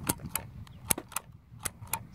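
Dymo embossing label maker being worked by hand: three pairs of sharp plastic clicks as its letter wheel and embossing handle are operated to spell out a name.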